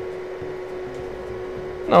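Steady electrical hum with one constant tone over a faint even whir, from a bench DC power supply delivering 5 amps in constant-current mode.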